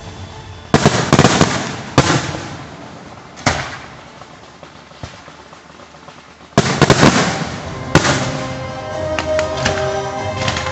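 Fireworks display: aerial shells bursting with sharp bangs, a cluster about a second in, single bangs at two and three and a half seconds, then a quieter lull before a rapid barrage at six and a half seconds and another bang at eight, with crackling near the end.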